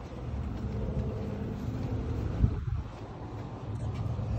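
A steady low mechanical hum, with a single low thump about two and a half seconds in.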